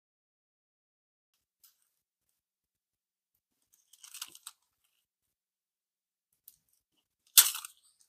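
Paper handling as fingers press glued paper tabs onto a journal page: a faint crinkle about four seconds in and a short, louder rustle near the end.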